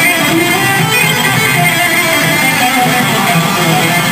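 Loud rock music led by electric guitar, playing steadily.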